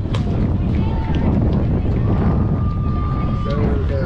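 Wind buffeting the microphone in a steady low rumble, with distant voices of players and spectators under it, including one long held call about two seconds in. A single sharp knock sounds just after the start.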